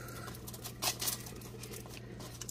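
Aluminium foil crinkling in a few small, scattered crackles as it is pressed and crimped around a pot rim to seal it tight. A faint steady hum runs underneath.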